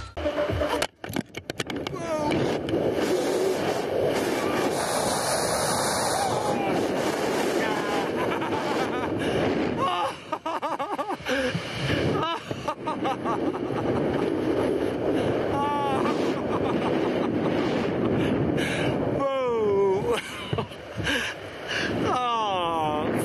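Rushing wind over a body-worn camera's microphone during a canyon swing's freefall and swing, loud and steady throughout. In the second half, a few wordless yells rise and fall over it.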